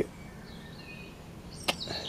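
Faint outdoor background with a few short, high bird chirps, and a single sharp click near the end.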